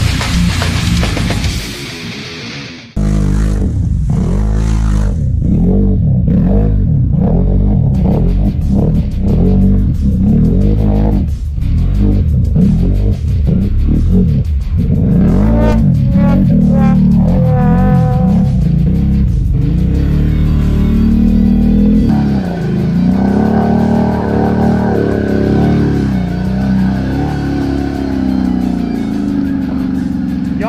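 Heavy metal music for the first few seconds, then an ATV engine revving up and down over and over as the quad churns through deep, muddy water, settling to a steadier run later on.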